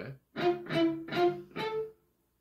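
Electric guitar picking four palm-muted single notes, six-five-six on the B string and then a higher note at the fifth fret of the high E string. Each note is struck separately and rings only briefly.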